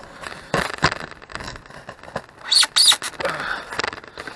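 Glued fabric being peeled off a foam board: irregular crackling and scratchy tearing as the Glidden Gripper bond lets go, with two louder, sharp rips a little past halfway.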